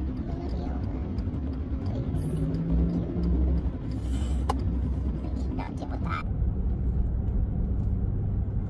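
Road and engine noise inside a moving car's cabin: a steady low rumble, with a brief hum about two seconds in and a sharp click near the middle.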